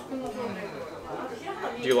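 Background chatter of voices in a busy dining room, with a man's voice starting to speak near the end.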